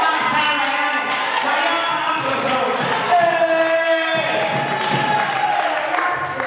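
Voices talking through microphones over a PA in a large room, continuous and overlapping, with one drawn-out voiced sound a little past the middle.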